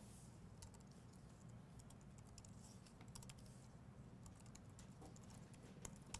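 Faint typing on computer keyboards: scattered, irregular key clicks over a low, steady room hum.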